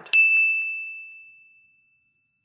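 A single ding sound effect: one bell-like strike with a clear high tone that rings and fades away over about two seconds, marking a section break between topics.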